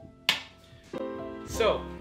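A single sharp knock about a quarter second in, a drinking glass set down on a stone countertop, followed by soft background piano music with held chords.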